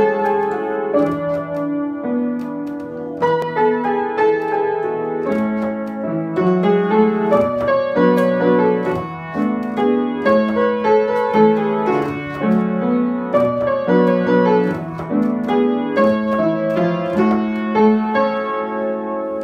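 Upright acoustic piano played with both hands: a continuous flow of chords under a moving melody, notes struck one after another with no breaks.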